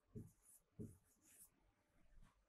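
Faint scratches of a pen writing on a board: a few short strokes in near silence.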